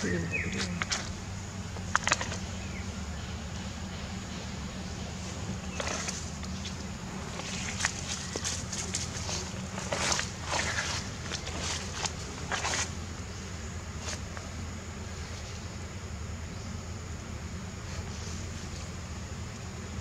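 Outdoor ambience: a steady low hum with scattered short rustles and clicks, most of them in the middle of the stretch.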